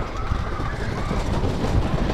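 Wooden roller coaster train rumbling along the track, heard from a seat on the moving train.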